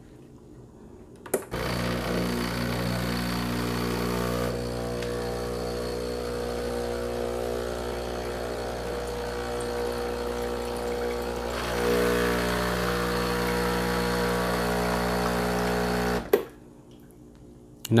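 Breville Barista Express pulling a double shot through finely ground tea leaves: a click about a second and a half in, then the pump's steady hum for about fifteen seconds as tea streams into a ceramic cup. The pump cuts off with a click near the end.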